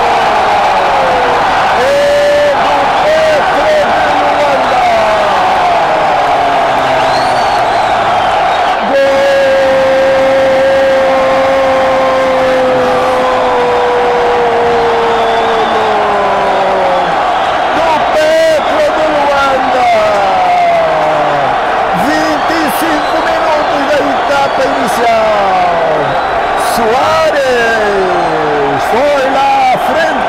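A commentator's goal cry: excited gliding calls, and about nine seconds in one long held shout that slowly falls in pitch over several seconds, over the steady noise of a stadium crowd.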